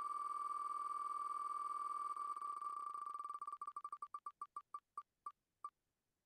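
Wheel of Names web app spinning: a rapid run of identical electronic ticks, one per name passing the pointer. At first they come so fast they blur into a steady tone, then they slow into separate, ever more widely spaced ticks as the wheel winds down to pick a winner.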